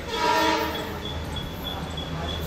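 Horn of a WDG-3A diesel locomotive hauling the Maharajas' Express, one honk of about a second that fades out, over a steady low rumble.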